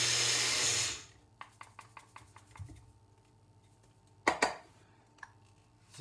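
Magic Bullet blender grinding coffee beans, its motor running with a loud steady whir and cutting off abruptly about a second in. Light clicks and one sharp, loud knock about four seconds in follow as the cup is handled and lifted off the base.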